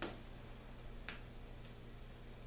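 Two small metallic clicks about a second apart as a pin's clasp is worked and fastened onto a shirt.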